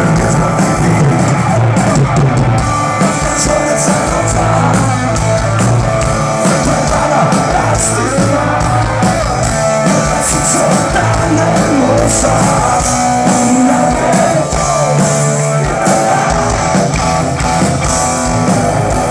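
Live rock band playing loud: electric guitar over a drum kit, heard from the audience.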